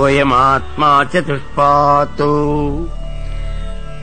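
A man chanting a mantra in several short phrases on level, held notes, over a steady low background drone.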